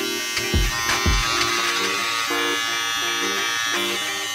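King C. Gillette cordless beard trimmer buzzing steadily as it cuts along the mustache line. Background music plays underneath.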